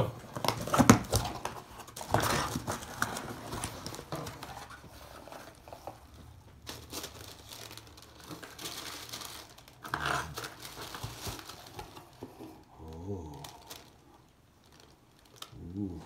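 Cardboard shoebox being opened and the white paper wrapping around the shoes crinkled and torn, in irregular rustling bursts. There is a short hummed vocal sound near the end.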